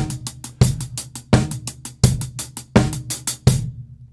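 Drum kit playing a slow, steady groove. Hi-hat strokes go hand to hand, about four to each bass drum beat, and the bass drum lands on every beat. The playing stops shortly before the end.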